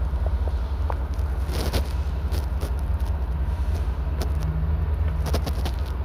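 A steady low rumble, like a running vehicle or machine, with scattered light clicks and knocks.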